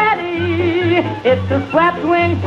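Sung commercial jingle: a singer holds and warbles notes over a band with a steady, beating bass line.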